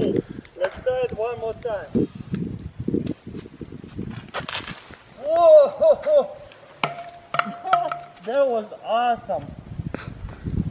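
A butane-fuelled plastic soda-bottle rocket going off with a brief whooshing burst about four seconds in, followed at once by loud excited exclamations from voices, and more exclamations a few seconds later.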